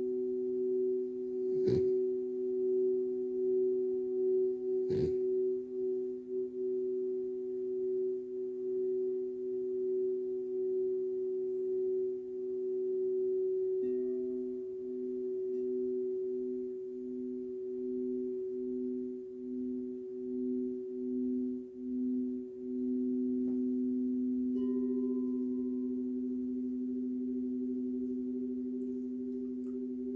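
Two crystal singing bowls ringing together, a low and a higher steady tone held throughout. There are two knocks in the first five seconds, and the lower tone pulses for several seconds midway before steadying again.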